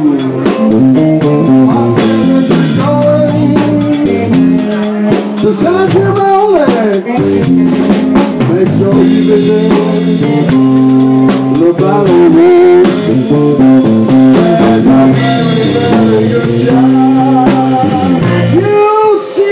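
A live blues band playing: electric guitar, bass and drum kit with rimshots and cymbals, with a bending melodic lead line over the top. The guitar is a Parker Fly hard-tail electric played through a Koch Studiotone amp.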